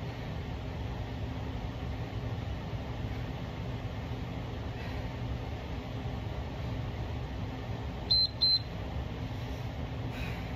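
Two short high beeps from a Tabata interval timer, about eight seconds in, marking the end of a 20-second work interval, over a steady low hum.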